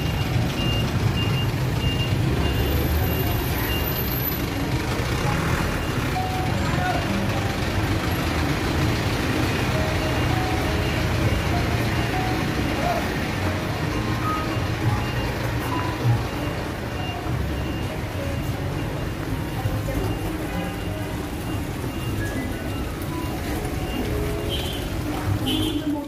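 City street traffic: motorbike and truck engines running, with a truck's reversing beeper pipping at an even pace for the first few seconds. Music and background voices play along with it.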